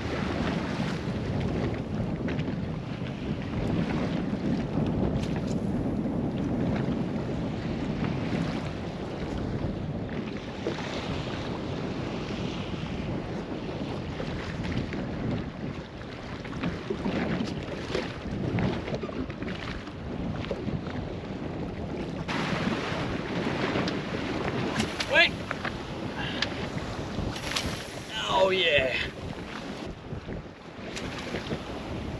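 Strong wind buffeting the microphone over choppy open sea, with the rush of water around a small boat. It gusts harder over the last several seconds.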